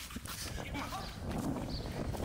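Footsteps of two people breaking into a run on concrete pavement, a quick patter of short scuffs and slaps, with a short laugh at the start.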